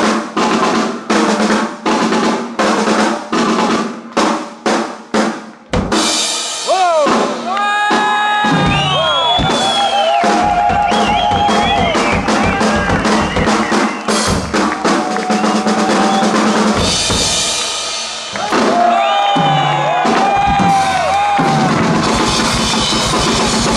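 Two drum kits played together in a live drum duet. The first six seconds are evenly spaced strikes, two or three a second, over a ringing low drum. Then comes dense, fast drumming with rolls across kick, snare and cymbals, while high pitched tones glide up and down above it.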